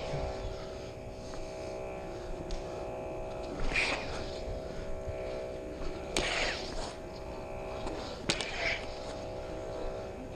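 Combat lightsabers' electronic sound boards humming steadily, with sudden swing-and-clash sound effects from the blades about four, six and eight seconds in, the last two with sharp onsets.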